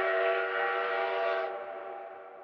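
Train whistle sound effect: one held chord of several tones, steady for about a second and a half, then fading away.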